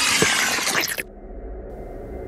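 A shattering crash sound effect, a dense burst of breaking and tinkling, that cuts off suddenly about a second in, leaving only a faint steady background.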